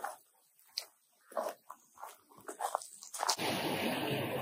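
Footsteps crunching and rustling through dry fallen leaves in irregular short bursts. About three seconds in, the sound changes abruptly to a steady rushing noise.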